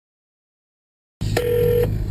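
A brief steady telephone tone, about half a second long, heard over a low hum on the phone line, cut in suddenly just over a second in, just before the call is answered.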